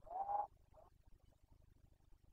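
A single short, hoarse animal call rising slightly in pitch, followed just after by a fainter second one.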